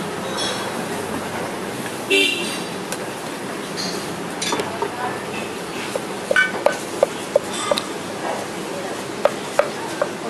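Steel cleaver chopping food against a metal pan: sharp, slightly ringing knocks, about five quick strikes from about six seconds in and two more near the end, over steady street background noise. A brief horn-like toot sounds about two seconds in.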